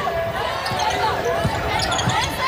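Basketball bouncing on a hardwood court, with sneakers squeaking as players move, and a few low thuds of the ball.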